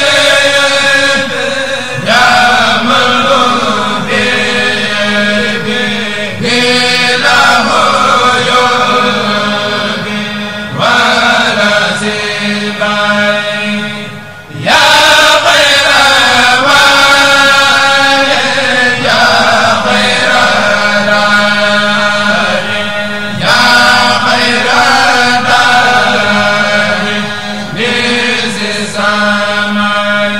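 A Senegalese Mouride kourel, a group of men, chanting a khassida together into microphones, in long phrases of about four seconds each with short breaks between them.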